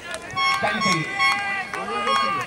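A man's voice calling out in long, drawn-out sounds with no clear words.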